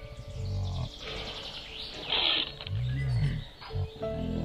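Low, growl-like sounds in three short bursts, the pitch rising and falling, over faint steady background music.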